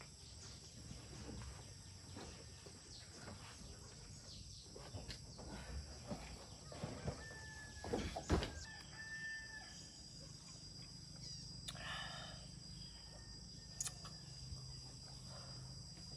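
A rooster crowing faintly, about twelve seconds in. Scattered knocks and clicks come before it, the loudest a sharp knock at about eight seconds.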